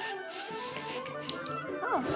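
Aerosol can of temporary hair colour spray hissing in one burst of about a second as it is sprayed onto hair.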